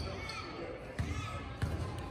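A basketball bounced three times on a hardwood gym floor, a dull thump at the start, another about a second later and a third half a second after that: a player dribbling before a free throw. Faint voices in the gym behind it.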